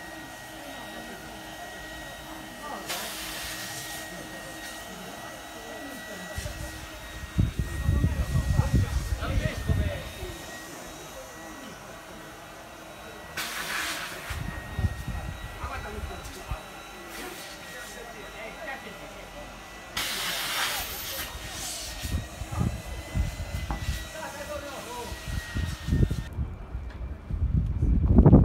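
Gusts of wind buffeting the microphone, loudest for a few seconds near the middle, with three short bursts of hiss roughly ten seconds apart over a faint steady high tone, and voices in the background.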